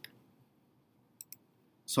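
Two quick, sharp clicks a little past one second in, in an otherwise quiet room, followed near the end by a man's voice starting to speak.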